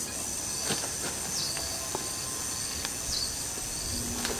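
Steady high-pitched drone of insects, with two brief high chirps about a second and a half and three seconds in.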